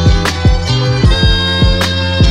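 Instrumental hip hop beat without vocals: a sustained, reedy chord that shifts pitch about a second in, over deep kick drums that drop in pitch, with sharp snare or cymbal hits.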